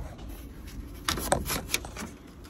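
Roof rain-gutter trim strip being pried up by hand from its channel along a car's roofline, giving a few quick scraping clicks in the second half.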